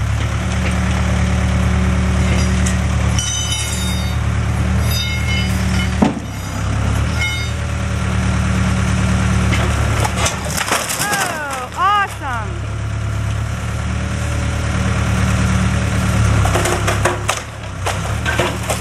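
Case Construction King backhoe loader's diesel engine running steadily under hydraulic load as its bucket tears into a garage's timber roof, with wood cracking and splintering. A sharp knock comes about six seconds in, a few brief squeals around eleven seconds, and more cracking of timber near the end.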